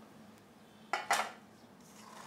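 Metal clattering: kitchen scissors and the metal bowl of fish knocking together, two quick knocks about a second in, the second louder.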